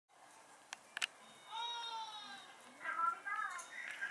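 A cat meowing once, one long call of about a second with a slightly arching pitch, preceded by two sharp clicks; voices murmur in the background afterwards.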